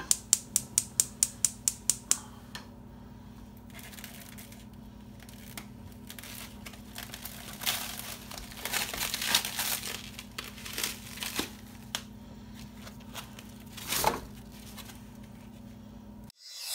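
Gas stove burner igniter clicking rapidly, about six ticks a second for two seconds. Then plastic wrap crinkling and tearing as it is pulled off a foam tray of raw ground beef, and a short thud near the end as the block of meat drops into a stainless steel frying pan.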